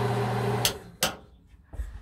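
Stainless steel range hood's exhaust fan motor running with a steady hum, then switched off with a sharp switch click a little over half a second in. A second click follows about a second in.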